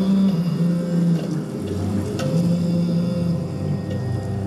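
Devotional music of long, held low notes that step slowly from one pitch to another, breaking off briefly a little after one second in. There is a single sharp click about two seconds in.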